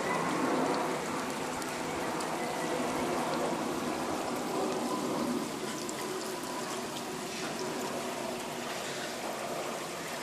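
Floodwater running steadily in a flooded street after heavy rain: an even, continuous rush of water, a little louder in the first half.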